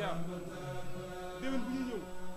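Male voices chanting an Islamic devotional chant in long, held notes with occasional gliding changes of pitch.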